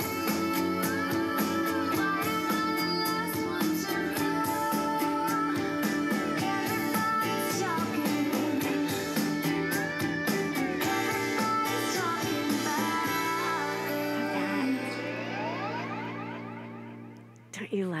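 A song with a woman singing, played at high volume from a CD on a Bose Wave Music System IV. Over the last few seconds the song vamps out and fades away, with audible reverberation.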